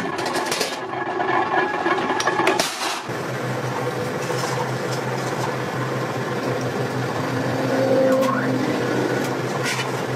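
Flywheel-driven mechanical power press running, with a few sharp metallic knocks as a steel sheet is worked under it. About three seconds in the sound changes to a steady low machine hum with an occasional faint clank of sheet metal.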